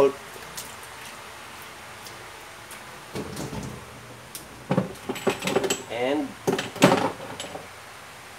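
Quiet kitchen room tone for about three seconds, then a few light knocks and clicks of kitchenware being handled, with a voice in the background.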